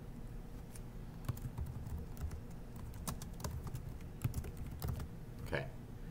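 Typing on a computer keyboard: an irregular run of soft key clicks as a short label is typed.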